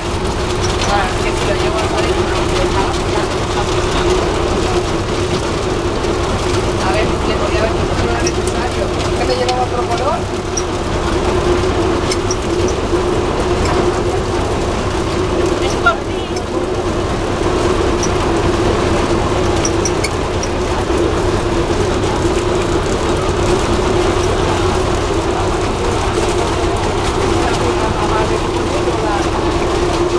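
Tour boat's engine running with a steady drone, with people talking over it. There is a single brief knock about halfway through.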